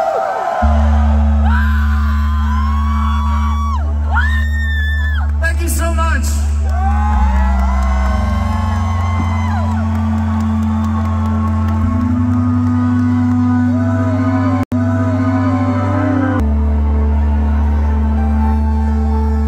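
Live electronic music over a concert PA: long, sustained low synthesizer chords start about half a second in and shift every few seconds. A crowd whoops and cheers over the opening half, and the sound drops out for an instant near the end.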